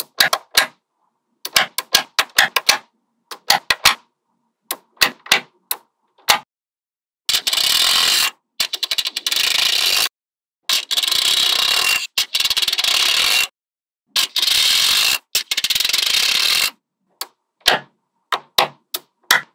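Small metal magnetic balls clicking as they snap onto one another, first in sharp separate clicks, then in four long stretches of dense, rapid clicking and rattling, broken by sudden silences, with single clicks again near the end.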